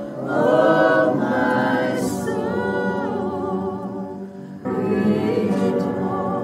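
Women's voices singing a worship song together in held, wavering phrases. The singing dips briefly and a new phrase begins about four and a half seconds in.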